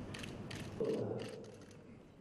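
Room sound of a ceremony in a hall: a scattering of light clicks over a faint hiss, with a steady low tone coming in about a second in and fading away.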